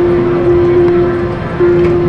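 Slot machine music: a slow melody of long held notes, over a steady bed of casino noise.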